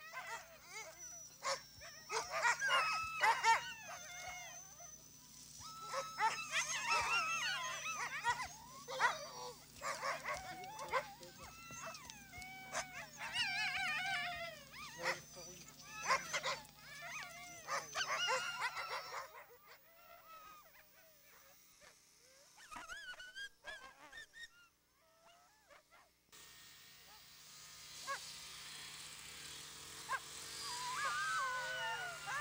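A team of Inuit sled dogs tethered on a chain, whining and barking with many voices at once, their cries rising and falling in pitch. The chorus dies down about nineteen seconds in, leaving only a few faint calls.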